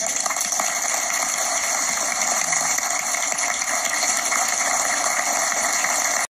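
Applause from a roomful of people clapping, starting suddenly and holding steady and loud throughout.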